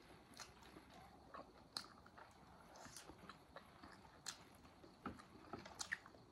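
Quiet chewing and mouth sounds of people eating steamed momos (dumplings): scattered soft clicks and smacks at an irregular pace.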